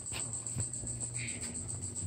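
Insects chirping in a high, fast, even pulse, with a low steady hum underneath and a few faint clicks.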